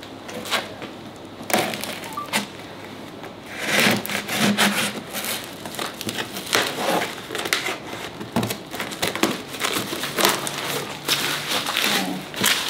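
Scissors cutting through packing tape on a cardboard box, an irregular run of scrapes, rips and crinkles.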